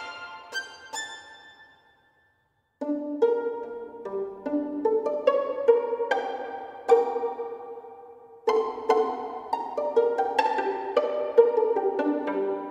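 Sampled solo first-chair violin playing short notes. A run of quick spiccato notes rings out in the first two seconds, then after a brief silence a phrase of plucked pizzicato notes starts about three seconds in.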